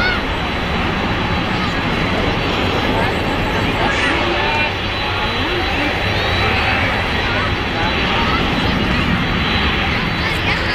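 Boeing 747-400's four jet engines running at low thrust as it taxis, a steady rumble with a thin, steady high whine over it.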